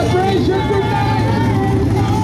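Several motorcycle engines idling together, a steady low running sound under the voices of a crowd.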